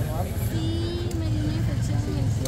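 Steady low rumble of street traffic engines, with people's voices close by, including one drawn-out vocal sound.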